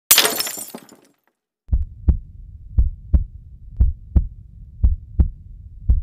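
Intro sound effects: a crash like breaking glass that dies away within a second, then a heartbeat effect of paired low thumps, about one pair a second.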